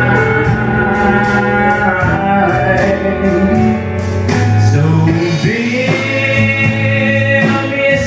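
Live country band playing a slow song: acoustic guitar strummed in a steady beat, with fiddle and pedal steel guitar holding and sliding between long notes, and a man singing.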